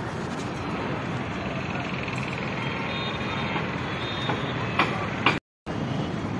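Steady outdoor road-traffic noise rising from a busy road below, with a few sharp clicks near the end and a brief dropout to silence just before the end.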